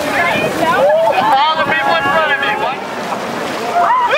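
A crowd of people shouting and shrieking over one another as they wade into cold water, with wind and water noise beneath.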